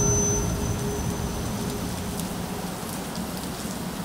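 The band's final crash ringing out: a noisy wash of cymbals and amplifiers fading steadily, with a faint high ringing tone through the first half.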